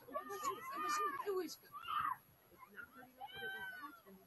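People's voices close to the microphone, high-pitched and without clear words, with one falling call about two seconds in.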